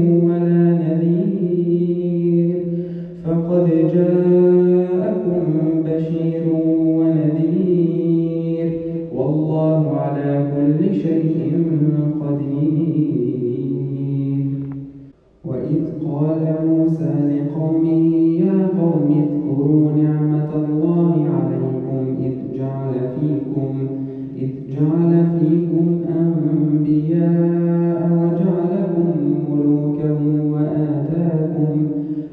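A man reciting the Quran aloud in melodic tajweed style, with long held notes. He recites in several long phrases, with a short break for breath about halfway through.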